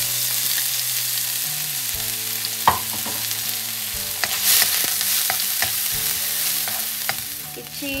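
Finely chopped ginger and garlic sizzling steadily in hot refined oil in a pan, stirred with a wooden spatula, with a few sharp clicks along the way. The sizzle eases slightly near the end.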